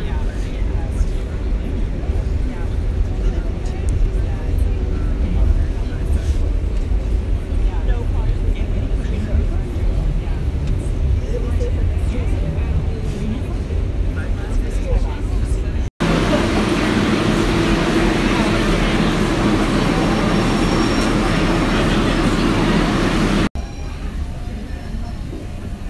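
A subway train running, heard from inside the car: a steady low rumble with faint passenger voices. About two-thirds of the way through it changes abruptly to a louder, hissier rush.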